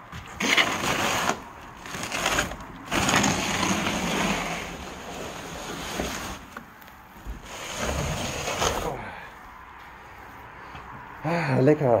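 Irregular rustling and crinkling of bubble wrap and cardboard being handled, in bursts that stop after about nine seconds, followed near the end by a short spoken "ja".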